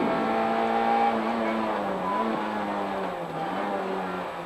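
Rally car engine heard from inside the cockpit, running hard with a steady note. Its pitch dips briefly about halfway through, then falls lower over the last second.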